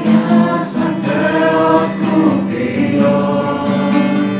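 A group of young voices singing a Christian worship song together, in long held notes.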